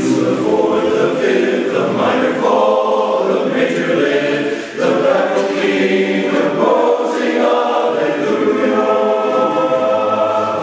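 Men's chorus singing held chords, with a short dip in the sound just before halfway.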